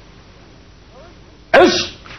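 A man's single short, sharp shout about one and a half seconds in, its pitch falling away, like a called karate command; before it only quiet room hiss.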